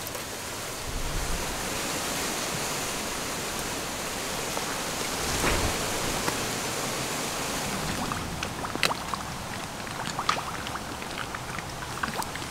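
Steady outdoor hiss of background noise, with light crackling and clicking in the last few seconds as a small plastic packet is handled.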